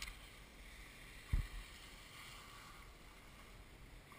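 Faint steady hiss of gliding over packed snow, with wind on the microphone. A single low thump about a second and a half in.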